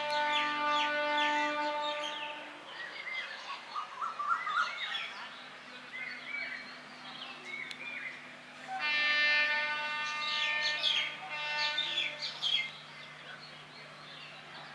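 Birds chirping and twittering throughout. A long steady horn tone sounds twice over them: once at the start for about two and a half seconds, and again about nine seconds in for about three seconds.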